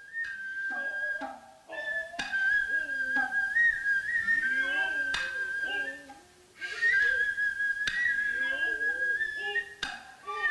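Noh ensemble music: a nohkan flute holds long high notes with small ornamental turns, over a few sharp hand-drum strikes and the drummers' drawn-out vocal calls. The music drops away briefly a little past halfway, then resumes.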